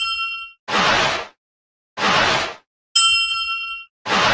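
Animated subscribe-button sound effects: a bright bell ding rings at the start and again about three seconds in, with two short whooshes between them.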